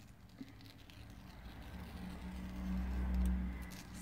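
Low rumble of a road vehicle passing outside the room. It builds from about a second in to a peak around three seconds and then fades.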